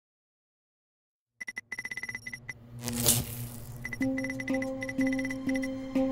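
Silence, then a burst of rapid, high electronic beeps and a short whoosh, followed by a synthesized music pulse repeating about twice a second.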